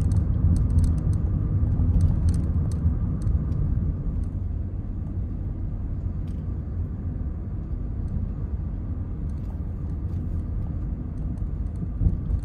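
Inside a Ford car on the move: a steady low rumble of engine and road noise heard from the cabin. It is a little louder for the first few seconds, then settles slightly quieter.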